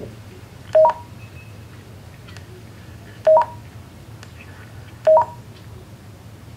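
Three short electronic two-note beeps, each a low note stepping up to a higher one, from a Motorola XPR 4550 DMR mobile radio's speaker. They come about two and a half seconds apart, then about two seconds apart.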